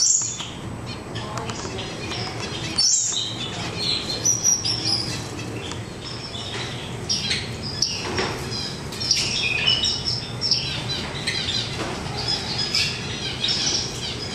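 Many small aviary birds chirping and tweeting: short, high calls overlapping throughout, briefly cut off near the start and again about three seconds in.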